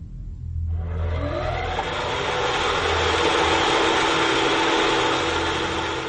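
A loud, steady engine-like mechanical noise that swells in about a second in. Its pitch rises briefly, then it holds steady, over a low pulsing drone.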